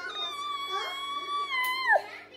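A baby's long, high-pitched squeal held at a steady pitch for nearly two seconds, then sliding down sharply and loudest just at the end.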